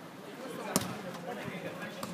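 A football kicked once, a single sharp thud about three quarters of a second in, over faint voices of players on the pitch.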